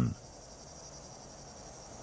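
Faint, steady, high-pitched chirring of insects such as crickets, over a low ambient hiss.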